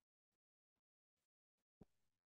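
Near silence with faint ticks a little over twice a second, and a single computer mouse click near the end as the code is run.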